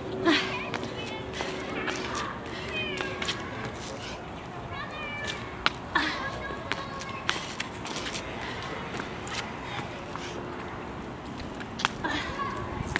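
Distant children's voices in short high-pitched calls over the park's background noise, with a few sharp slaps of hands and shoes on the brick paving during burpees.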